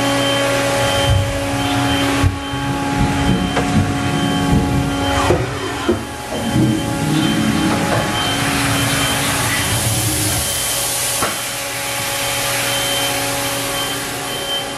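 Steady hum of a powered Haas VF-3SS vertical machining center: several steady tones with a faint high whine, typical of cabinet cooling fans and running electrics. A few short knocks come through about two and five seconds in, and a hiss swells for a couple of seconds past the middle.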